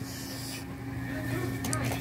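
A steady low hum with a few faint clicks and knocks near the end, as a toy RC truck is handled.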